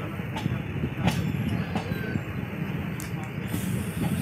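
Passenger train running, heard from on board: a steady rumble of wheels on the track with a few sharp clicks.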